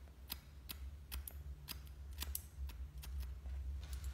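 Hairdressing scissors snipping the fringe of a bob haircut on a mannequin head: a series of short, crisp snips, about three a second.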